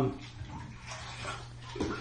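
Bath water sloshing faintly as a child moves in a filled bathtub.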